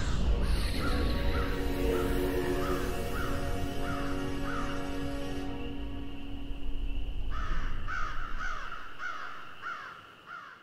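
Outro theme music: held low notes under a repeating short, harsh call about twice a second, which pauses briefly past the middle and returns. The music fades out near the end.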